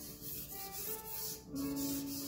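Stick of charcoal scratching and rubbing across drawing paper in short strokes, over soft background music with held plucked-string notes.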